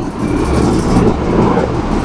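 A motor vehicle's steady low rumble, with no speech over it.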